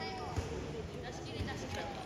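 Indistinct voices calling out across a large hall around a kickboxing ring, with two dull thumps, one about half a second in and another a second later.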